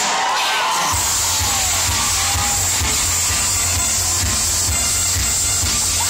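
Loud dance music over a crowd of teenagers shouting and cheering, heavy and distorted on a phone microphone. A pounding bass beat comes in about a second in and keeps up a steady pulse.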